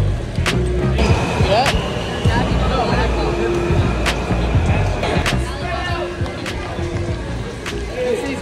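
Washington Metro train rolling past the platform: a deep, constant rumble, with a high steady whine for the first couple of seconds and scattered sharp clicks, under crowd chatter.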